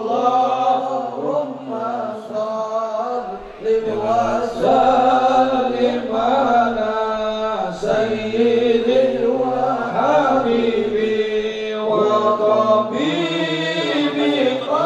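Islamic devotional chanting: voices singing a continuous, winding melody, which goes on without a break.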